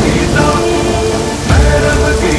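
Heavy rain pouring, mixed under trailer music, with a deep boom about one and a half seconds in.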